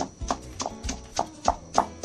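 Stone pestle pounding a wet chilli paste in a stone mortar, in steady strokes of about three a second, each a dull knock. Background music plays underneath.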